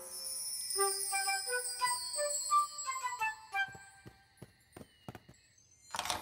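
Cartoon magic-sparkle sound effect: a high shimmer with a twinkling run of short, bell-like chime notes. Near the end it gives way to a series of light clicks.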